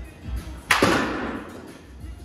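Baseball bat striking a ball during a batting-cage swing: one sharp crack about two-thirds of a second in that fades out over the next second. Background music with a steady bass beat plays underneath.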